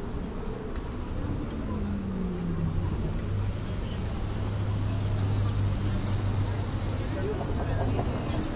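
City street traffic: a steady low engine hum that strengthens from about two and a half seconds in over a general haze of road noise, with people's voices mixed in.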